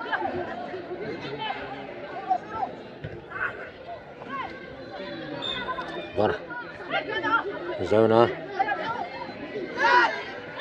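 Several voices talking and calling out over one another, with a louder call about eight seconds in. A single short thump sounds about six seconds in.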